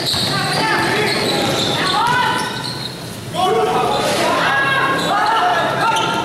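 A basketball being dribbled on a gym court during a game, in a large echoing hall, with players and spectators calling out.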